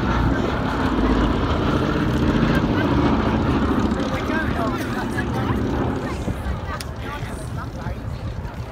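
Boeing B-17G Flying Fortress's four Wright Cyclone radial engines running as the bomber flies past. The sound is loudest in the first few seconds and fades as it flies away near the end.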